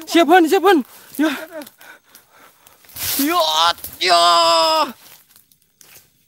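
A voice crying out in wordless exclamations, with one long, steady cry held for about a second near the end.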